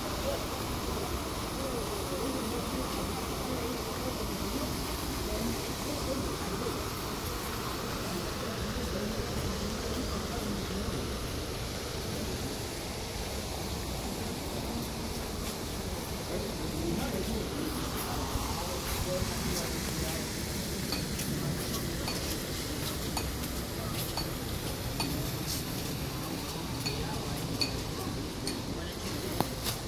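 Steady outdoor hiss in a park, with a fountain spraying onto a lake at first and people talking in the background. Short high ticks come about once a second in the later part.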